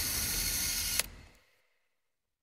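A 35 mm film camera's automatic motor rewinding the film, whirring steadily, then stopping with a click about a second in as the roll is fully rewound.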